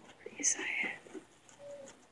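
A person whispering a short word or phrase, breathy and hissing, then a brief faint hum near the end.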